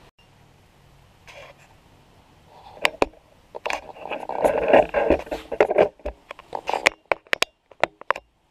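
A camera being handled and mounted on a tripod: quiet at first, then from about three seconds in a run of sharp clicks and knocks with rubbing and scraping, ending with a few single clicks near the end.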